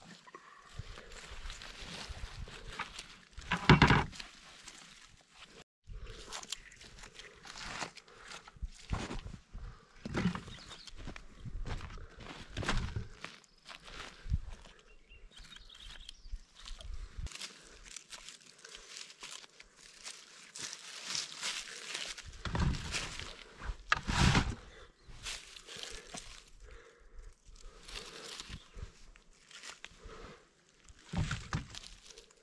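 Footsteps and rustling in dry leaf litter and grass as morels are picked and cut by hand. The sounds are irregular, with a few louder crunches and brushes, the loudest about four seconds in.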